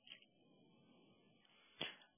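Near silence, with a faint click just after the start and a short soft burst of noise near the end.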